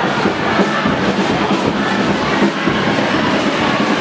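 Marching street-parade percussion: snare drum played continuously with a cymbal, over the noise of a street crowd.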